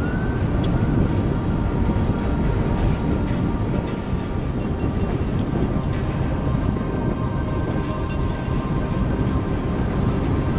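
Steady low rumble of a ferry under way, its engine noise mixed with wind on the microphone.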